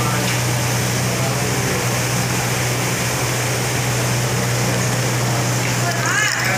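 Gas burners under large cooking pots running with a steady rushing noise over a low, constant hum.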